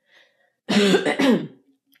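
A woman clearing her throat once, lasting under a second, about two-thirds of a second in.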